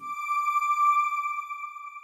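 A single sustained electronic chime tone, the sting of a TV channel's closing logo ident, sounding as one clear note that swells briefly and then slowly fades away.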